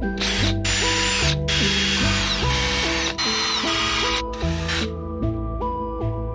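Electric drill motor running in several short bursts, its high whine dropping in pitch each time it slows, then stopping near the end, over background music.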